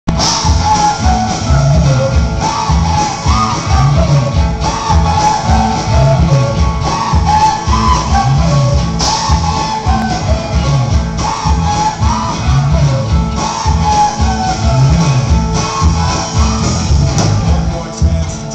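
Live rock band playing: a male singer over guitars and a steady beat, recorded loud from within the audience.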